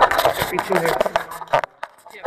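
Handling noise from a 360 camera rig being set down and held on a carpeted floor: a quick run of scrapes and clicks from hands on the housing, which stops shortly before the end.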